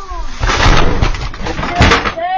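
A person slipping and falling hard on a wet wooden porch deck: a long, loud scuffling crash about half a second in, then a second sharp crash near the end as she lands and knocks things over.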